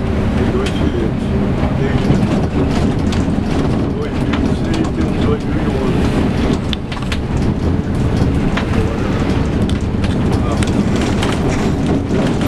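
Cabin sound of a moving Mercedes-Benz O-500M coach with a Busscar El Buss 340 body: steady engine and tyre noise on a wet road, with frequent small rattles and clicks from the bodywork.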